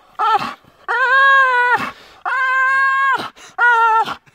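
Dog whining and grumbling through a stick clenched in its jaws while pulling in tug of war: four high, drawn-out calls, two short and two long held ones in the middle, each sagging in pitch at the end.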